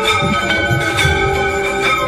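Temple bells ringing for aarti, struck again and again so that their ringing tones overlap, over devotional music with a steady low beat.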